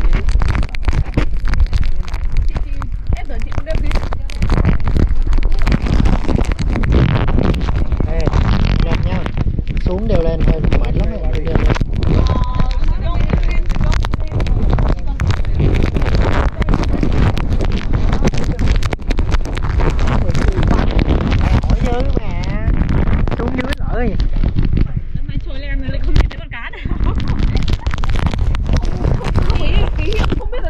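Wind buffeting the action camera's microphone: a loud, continuous low rumble broken by sudden thumping gusts, with people's voices talking underneath.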